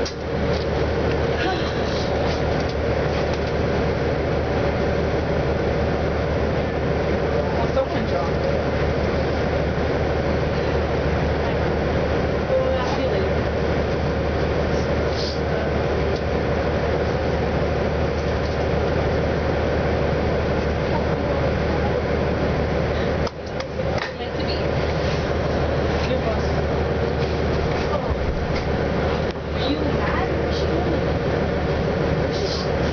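Inside the cabin of an Orion VII NG diesel city bus standing still with its engine idling: a steady drone with a low hum and a constant mid-pitched tone. The level dips briefly about three-quarters of the way through.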